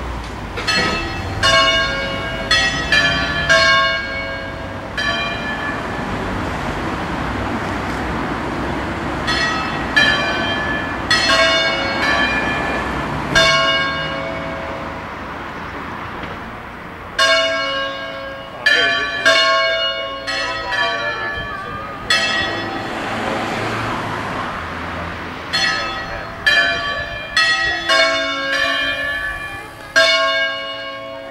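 Three church bells tuned to a C-sharp Phrygian scale, swung in the Ambrosian system, ringing a solemn peal. The strikes come in quick clusters of several strokes, with pauses of a few seconds between the clusters.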